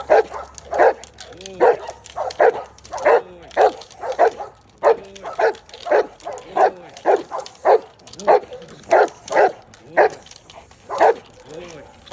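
Giant Schnauzer barking repeatedly and steadily, about two deep barks a second, while a decoy waves a stick at it in protection training.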